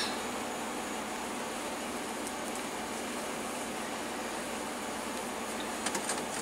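Steady, even background hiss of room noise with no distinct sounds, and one faint click near the end.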